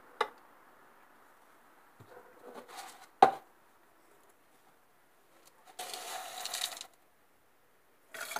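A metal spoon against a glass jar while lye is stirred into cold water: one sharp clink just after three seconds in, a fainter click at the start, and about a second of scraping near the end.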